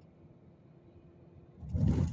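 Faint low road rumble of a moving car, with a brief loud rush of sound, heaviest in the bass, lasting about half a second near the end.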